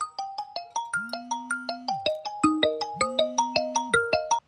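Mobile phone ringing with a marimba-style ringtone, a quick repeating run of mallet notes, while the phone's vibration buzzes twice for about a second each.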